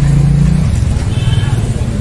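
A motor vehicle's engine running close by, a steady low hum that fades away under a second in.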